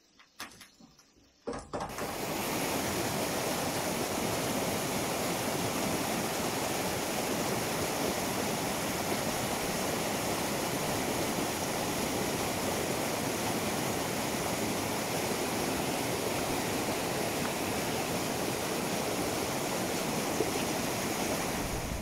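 Steady, unbroken rush of a fast-flowing river running over rocks. It starts abruptly about one and a half seconds in, after a near-quiet start.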